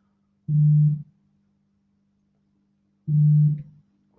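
Two identical low electronic buzzing tones, each about half a second long and about two and a half seconds apart, over a faint steady hum.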